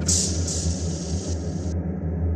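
Low, steady droning rumble of an ambient soundtrack, with a loud hissing whoosh laid over it that swells twice and cuts off sharply near the end.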